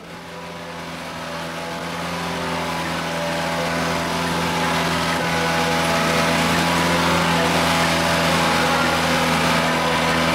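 Passenger boat's engine running, a steady drone that grows louder over the first few seconds and then holds.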